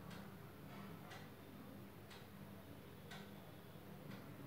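Faint ticking of a wall clock, one tick about every second, over a low steady room hum.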